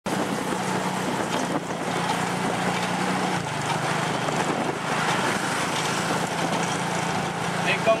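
Small motorcycle engine running steadily, with road and wind noise from a moving tuk-tuk. The engine's hum drops a little in pitch about three and a half seconds in.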